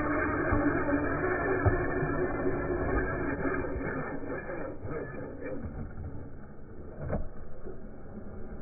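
Electric RC monster truck with a brushless motor driving on concrete, a steady rush of motor and tyre noise that fades after the middle, with a short knock about seven seconds in.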